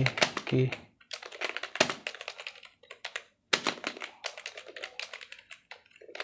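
Typing on a computer keyboard: rapid, uneven keystroke clicks, with a brief pause about three seconds in.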